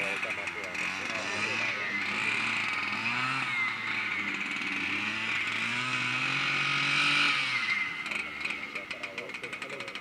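Engine of a lure-coursing machine running and dragging the lure line, its pitch rising and falling several times; the low engine note drops away about seven and a half seconds in, and rapid clicking follows.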